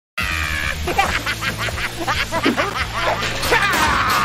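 Annoying Orange's squawky, high-pitched cartoon laugh, fast repeated cackles starting after a brief silent gap.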